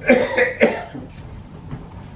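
A man coughing three times in quick succession into his hand, all within the first second.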